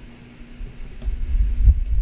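A few dull, low thumps, about a second in and again near the end, like knocks or bumps close to the microphone, with the song paused.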